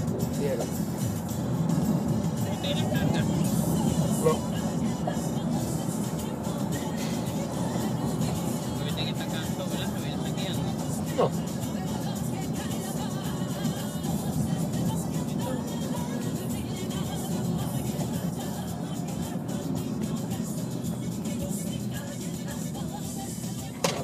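Steady road and engine noise of a car driving on a highway, heard from inside the cabin, with music playing in the background. The noise eases slightly in the second half as the car slows toward a toll plaza.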